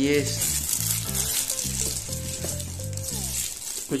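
Clear plastic wrapping crinkling as a wrapped bag is handled and lifted out of its box, over background music with a stepping bass line.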